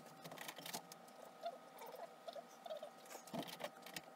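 Sped-up handling sounds of fingers working polymer clay on a cutting mat: a quick, irregular run of light taps and rustles with short squeaky chirps, over a faint steady whine.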